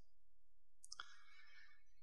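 Near silence of a room, with one faint click about halfway through.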